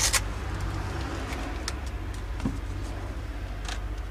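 Steady low rumble of an idling coach-bus engine heard from inside the cabin, with a few faint clicks and knocks.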